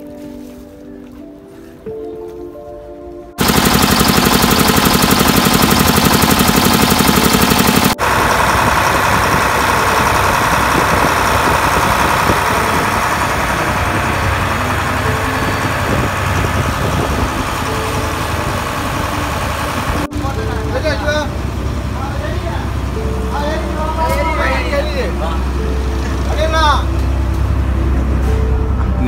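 A fishing boat's engine running loudly close by, with a fast, even pulse. It starts abruptly a few seconds in. In the last few seconds voices are heard over a lower hum.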